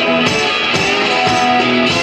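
Live blues from a one-man band: guitar playing an instrumental passage between sung lines, over a steady, evenly spaced beat.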